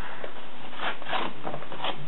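Paper and a plastic bag crinkling in several short rustles as they are handled to kindle a fire in a fireplace, over a steady background hiss.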